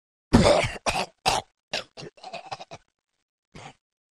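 A man's voice coughing and hacking: one heavy cough, then a run of shorter coughs that come quicker and fainter, ending with a small one near the end.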